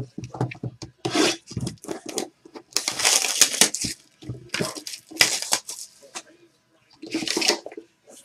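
Cardboard boxes of trading cards being handled: a box slid off a stack, its cardboard lid pulled off and the inner box drawn out, heard as several separate scraping rubs of cardboard.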